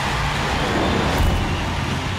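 Sound effects for a TV segment's animated title sting: a sustained rushing whoosh of noise over a low, steady bass.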